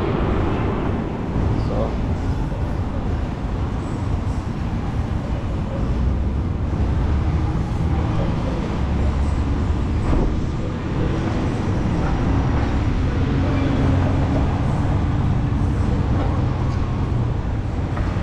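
City street traffic: cars driving through an intersection, a steady low rumble of engines and tyres.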